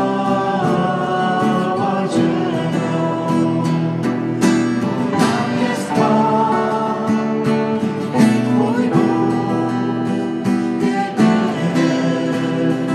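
A worship song: voices singing over guitar accompaniment, with held chords that change every few seconds.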